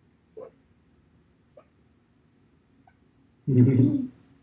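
A quiet room with a few faint short sounds, then a loud burst of laughter near the end.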